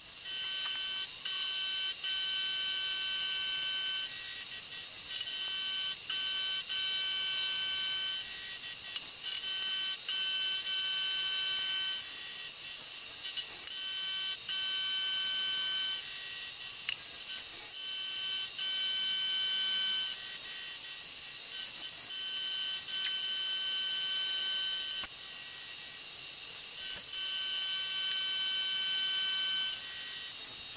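Vertical milling machine cutting a rounded edge on a metal plate with an end mill, the workpiece turned on a rotary table. It gives a steady high-pitched whine with several tones that drop out briefly every second or two, with a few sharp clicks, the loudest about 25 s in.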